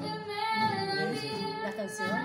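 A female voice singing sustained, wavering notes to acoustic guitar accompaniment.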